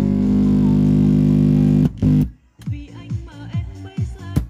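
Music with bass and guitar playing back from a cassette through a Sony CFS-715S boombox's speaker: a loud held low chord that cuts off about two seconds in, then a busier run of short bass notes.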